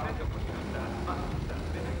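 Steady low drone of two-stroke racing kart engines running as the karts are push-started into life.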